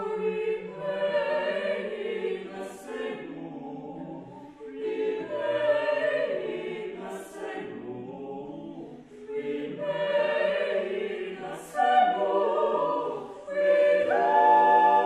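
Eight-voice vocal ensemble (two sopranos, two altos, two tenors, two basses) singing a contemporary choral piece in close, sustained chords. It comes in three long phrases with short dips between them, and a brief hissed 's' near the end of each.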